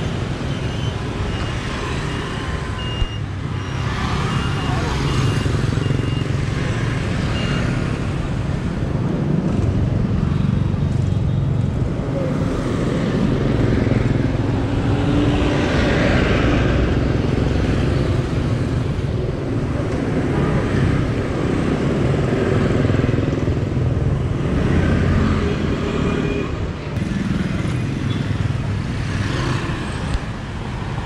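Busy street traffic: motorbike engines passing in a steady stream over a constant low rumble. About halfway through, an Isuzu light box truck passes close by, the loudest moment.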